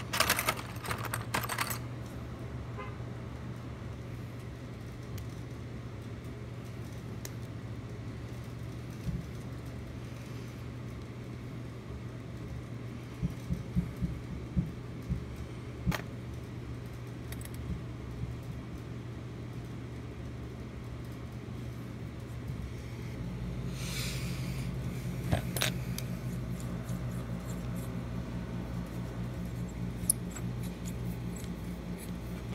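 Small metal lock parts and tools clicking and rattling in the hands, in scattered clusters: a quick run at the start, more around the middle and a few near the end. Under them runs a steady low hum that grows a little louder about three-quarters of the way through.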